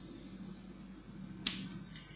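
Chalk writing faintly on a blackboard, with one sharp tap of the chalk against the board about one and a half seconds in.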